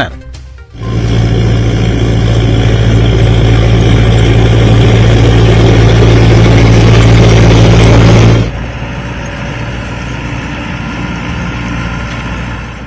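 Farm tractor's diesel engine running steadily while it tows a beach-cleaning sand sifter, loud at first and dropping to a quieter level about eight seconds in.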